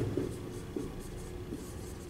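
Dry-erase marker squeaking on a whiteboard in a few short writing strokes, the first the loudest.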